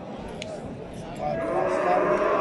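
Cattle lowing: a long, steady moo starts about a second and a half in, over a market crowd's background murmur.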